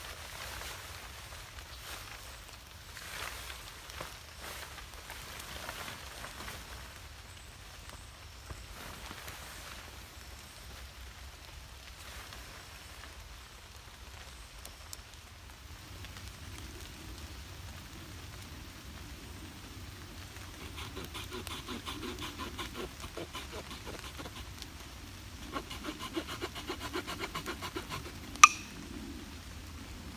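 Small folding hand saw cutting through a stick with quick back-and-forth rasping strokes, growing stronger in the second half and ending with a sharp click near the end as the cut finishes. Before the sawing, faint rustling and handling noise.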